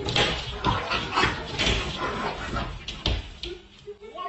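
A dog yipping and whimpering in short, irregular bursts, mixed with knocks and scuffling.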